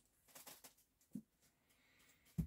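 Near silence, with a few faint rustles and light clicks in the first second and one soft low tap just after a second in: hands lifting a clear acrylic stamp block off card stock and moving over the paper.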